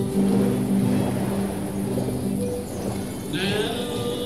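Live acoustic folk band playing a tune: two fiddles, a button accordion and two acoustic guitars, with held notes throughout and a new note with vibrato coming in near the end.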